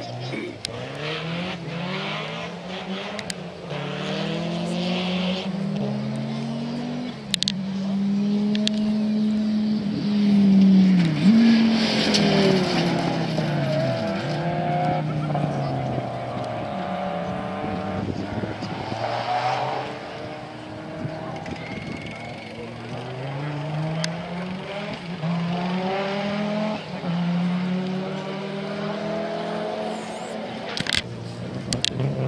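Audi Sport Quattro S1 rally cars' turbocharged five-cylinder engines revving hard through repeated gear changes as they race along a gravel stage, the pitch climbing and dropping again and again. The loudest stretch comes about halfway through, as a car passes with its pitch falling. A few sharp cracks are heard.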